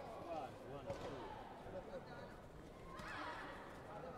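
Background of many voices talking in a large sports hall, with a sharp knock about a second in and a loud, high shout about three seconds in that rises and falls in pitch.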